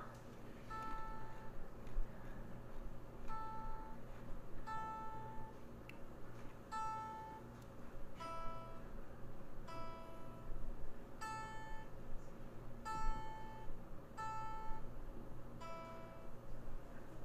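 Guitar plucked in single notes that ring out one at a time, spaced about a second or more apart, at a slow, unhurried pace.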